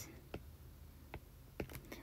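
A few faint, sharp clicks of a stylus tapping on a tablet screen while handwriting.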